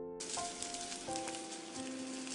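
Hot oil sizzling in a pan as seeds are tipped in for tempering, starting suddenly a moment in and going on with fine crackles.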